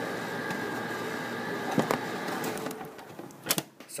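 Handling noise from an iPad being fumbled near its microphone: steady noise that drops away a little before three seconds in, with a knock a little under two seconds in and a sharper pair of knocks near the end.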